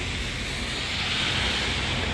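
Tyres of passing traffic hissing on a rain-wet road, the hiss swelling about a second in and easing slightly near the end, over a low traffic rumble.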